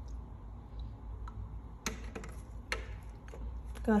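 Light clicks and taps of glass laboratory glassware being handled while a reagent is mixed: a few separate sharp ticks, the loudest about two seconds in.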